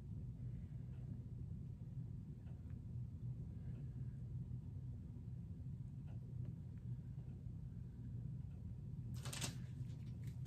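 Steady low room hum with a few faint light taps as gold resin is dabbed into silicone molds by hand, and a brief rustle about nine seconds in.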